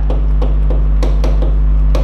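Pen tip tapping and clicking on an interactive whiteboard screen during handwriting, a quick uneven run of sharp taps about five a second, over a steady low hum.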